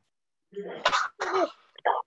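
Someone coughing and clearing their throat over the online class's call audio, in a few short bursts starting about half a second in.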